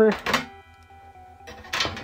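The bottom service cover of an HP ZBook laptop being slid and popped off its case, heard as a short scraping clack about one and a half seconds in.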